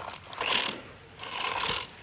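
Large plastic toy truck being handled on concrete: two short bursts of rapid plastic rattling and clicking, about half a second in and again later.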